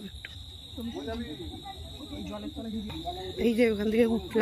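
Crickets trilling, a steady unbroken high tone, under people talking.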